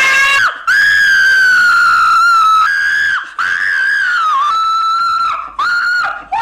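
A woman screaming in pain as a candle flame is held to her toes: a string of long, high screams with short breaks between them.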